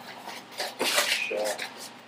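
Cardboard box and blue painter's tape being handled, a few short rustling and scraping noises in the middle.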